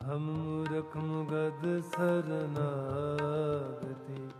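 Harmonium playing a reedy melody over tabla strokes in Sikh shabad kirtan, coming in suddenly at the start and moving in steps from note to note.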